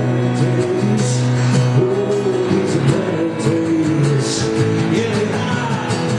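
A man singing with a strummed acoustic guitar in a live performance, amplified through the venue's sound system.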